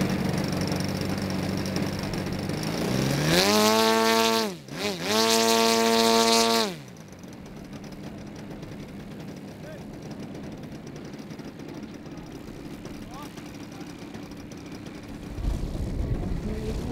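Large-scale RC aerobatic plane's GP 123 petrol engine with MTW tuned pipes, running on the ground: idling, then revved up twice, rising sharply in pitch and held at high revs for about a second each time, before dropping back to a quieter idle. The engine picks up again just before the end.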